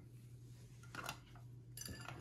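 A few faint, light clicks and taps of plastic labware as the lid goes back onto a petri dish of agar, about a second in and again near the end, over a steady low hum.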